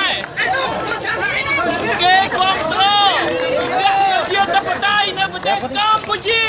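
Speech only: a man talking loudly among a crowd of many overlapping, chattering voices.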